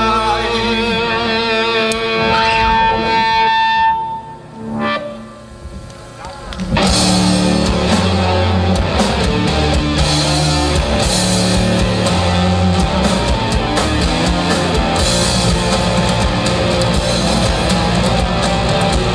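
Live rock band playing through stage amplifiers. Electric guitar holds notes for the first few seconds, the level drops briefly, then the full band with drum kit comes back in loudly about seven seconds in and keeps a steady beat.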